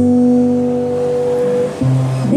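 Steel-string acoustic guitar chord ringing out between sung lines of a slow ballad, a new chord struck near the end.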